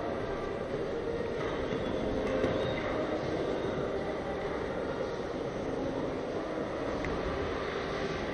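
Steady, even background noise of an indoor show-jumping arena's hall, with no clear beat or single event standing out.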